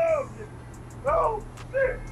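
A cartoon character's voice from an animated clip: three short utterances with sliding pitch, near the start, about a second in and near the end.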